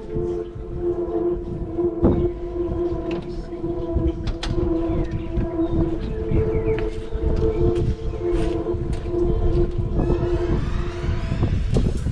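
Gusty wind rumbling on the microphone, with a steady drone of held tones underneath that shifts every few seconds.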